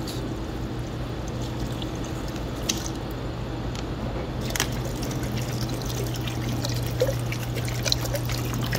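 Bottled spring water pouring into a metal pot of dried rose petals, a steady trickle splashing on the petals and the water already in the pot.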